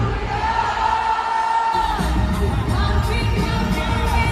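Live amplified concert music over the arena's sound system, heard from high up in the arena: a singer holds one long note, then the bass comes back in about halfway through. Crowd noise sits underneath.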